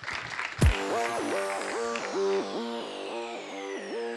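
Brief audience clapping, cut off less than a second in by a loud hit that starts electronic outro music: a pulsing synth chord repeating two to three times a second under high tones sliding downward.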